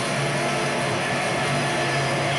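Live band playing loud: drum kit and electric guitar in a dense, unbroken wall of sound.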